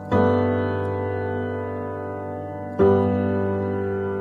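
Background music of slow, sustained piano chords: one chord struck at the start and another just before three seconds in, each ringing on and slowly fading.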